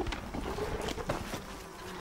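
A fly buzzing in a faint steady drone, broken by a few sharp clicks and snaps.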